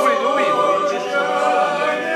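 A small group of voices singing Corsican sacred polyphony a cappella, holding long chords that shift slowly in pitch.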